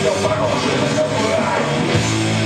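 Live rock music: a man singing loudly into the microphone over electric guitar. A strummed guitar chord is struck and rings on right at the end.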